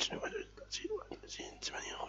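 Quiet, low-level speech: a man talking softly, close to a whisper.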